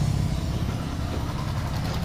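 A motor or engine running steadily with a low hum.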